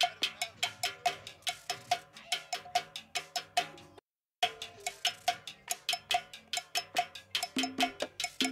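Cowbell struck in a steady, fast rhythm, each hit ringing briefly, with lighter percussion underneath. The part is isolated from a band recording. The sound cuts out completely for about half a second just after halfway through, then resumes.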